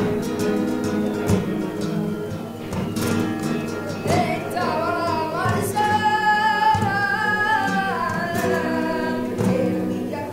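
Two flamenco guitars playing while a young woman sings a flamenco cante; from about four seconds in her voice holds long, wavering, ornamented notes over the guitar strokes.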